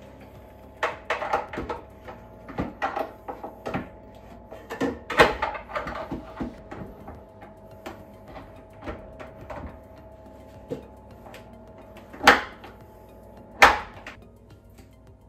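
Concealed cup hinges on a wooden cabinet door being clicked onto their mounting plates as the door is fitted and swung, a string of clicks and knocks. Two louder, sharper clicks come near the end.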